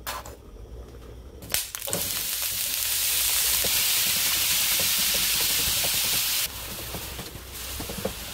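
Raw ground beef sizzling loudly in hot oil in a nonstick frying pan, starting suddenly about two seconds in as the meat goes into the pan, with small scrapes and taps of a silicone spatula breaking it up. The sizzle drops abruptly to a softer level about six and a half seconds in.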